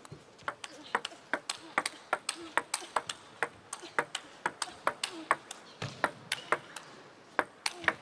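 Table tennis rally: the celluloid-type ball clicking sharply off the rackets and the table in quick alternation, about three to four strikes a second, kept up without a break.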